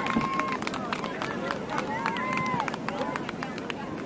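Voices shouting across an outdoor soccer field, with two long drawn-out calls, one at the start and one about two seconds in, over scattered sharp clicks.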